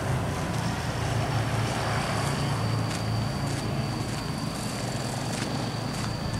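A steady low motor drone, with a thin, steady high-pitched whine above it.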